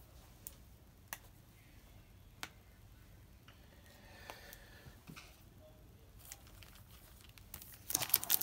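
Faint, sparse handling sounds: a few soft clicks and light rustles. Near the end comes the louder crinkle of a foil trading-card pack wrapper being picked up.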